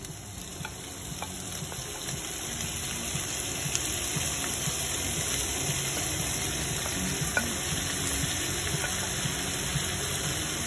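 Raw chicken hearts sizzling as they are slid into a pan of hot oil with onion and garlic. The sizzle grows louder over the first few seconds as more pieces go in, then holds steady, with a few light clicks of the wooden spatula against the plate and pan.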